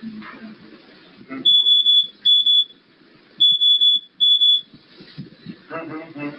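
Electronic alarm sounding four loud, high-pitched beeps in two pairs, the pairs about two seconds apart.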